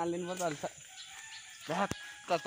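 A rooster crowing. Its long last note is held and falls away, ending about half a second in.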